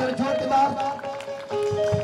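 Live worship music: a man sings a devotional song through a microphone and PA over sustained instrumental accompaniment. A steady drum beat comes in near the end.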